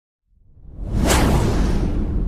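Logo-intro sound effect: a whoosh that swells from silence and peaks in a sharp hit about a second in, trailing into a deep, slowly fading rumble.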